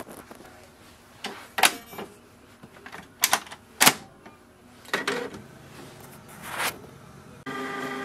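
Canon PIXMA MG3640S inkjet printer's plastic ink cartridge chamber door and front covers being closed by hand: a series of sharp plastic clicks and knocks, the loudest about four seconds in.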